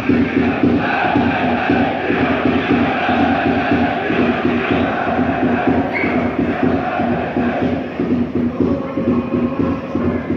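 Football supporters chanting together with a steady, repeating drum beat under the voices.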